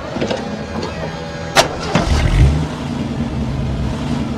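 Car engine revving up about halfway through, then running steadily at a low pitch. A sharp click comes just before the rev.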